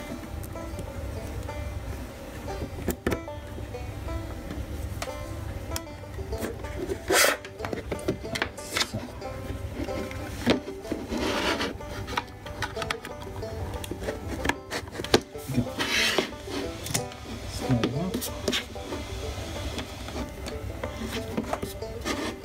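Background music with plucked strings, overlaid by scattered clicks, knocks and rubbing as cables and plugs are handled and pushed into a plastic set-top box on a wooden desk.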